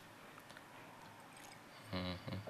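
Quiet room tone with a few faint ticks; a short voiced sound starts right at the end.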